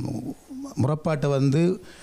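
Speech: a man talking into a handheld microphone, in short phrases with brief pauses.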